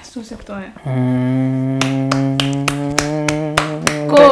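A man's voice holding one long, low, steady hummed note for about three seconds, after a few short words. A quick series of sharp clicks, about five a second, runs over the second half of the note.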